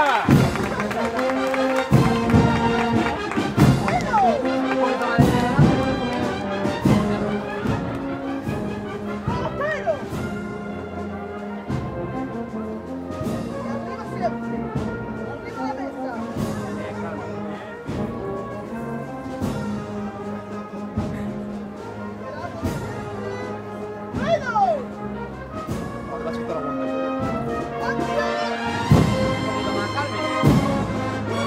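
Agrupación musical, a Holy Week cornet-and-brass band with drums, playing a processional march: held brass chords over steady drum strokes.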